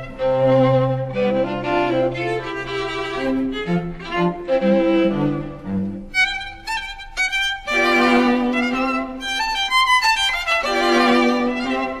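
Orchestral film-score music for strings: violins carry a slow melody with vibrato over cellos and lower strings. The low strings drop out briefly twice, about six and ten seconds in.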